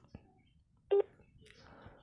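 A mobile phone gives one short electronic beep about a second in, as a phone call is being placed.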